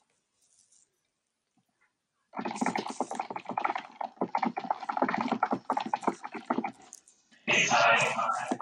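Dead silence for about two seconds, then a man's voice coming through a lagging video call, broken up into choppy, garbled fragments that are hard to make out.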